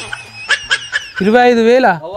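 Men's voices: a few short laughs about half a second in, then a drawn-out voiced call near the end.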